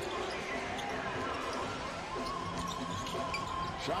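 A basketball being dribbled on a hardwood court, heard as irregular short bounces over steady arena crowd noise, with a faint steady tone joining about halfway.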